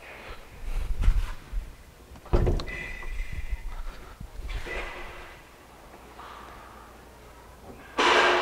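Handling noise and clunks from a Corvette's rear hatch being released and lifted open, with the sharpest clunk a little over two seconds in, followed by a short high tone.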